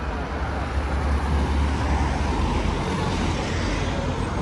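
Street traffic: a steady low engine rumble of cars and a bus passing close by, a little louder from about a second in.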